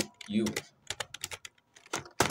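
Typing on a computer keyboard: a quick run of keystrokes, with a few more near the end.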